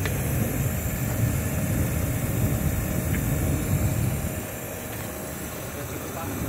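A steady low rumble with a faint, thin, steady hum, typical of machinery running.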